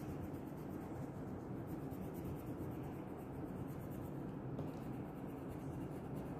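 Crayon scratching on paper in repeated back-and-forth colouring strokes, over a steady low background hum.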